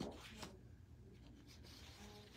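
Faint rustle of scrapbook paper sheets being handled on a table, with two brief brushes: one at the very start and one about half a second in.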